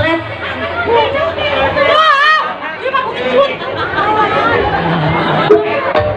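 Loud overlapping voices, several people talking and calling out at once. A brief high, wavering cry stands out about two seconds in.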